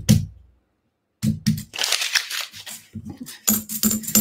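Paper wrapper of a roll of half dollars being torn open and crinkled by a gloved hand, followed by a few sharp clicks of the coins near the end.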